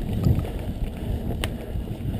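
Wind buffeting the microphone and the rumble of a mountain bike riding fast over a dirt singletrack trail, with a sharp click from the bike about one and a half seconds in.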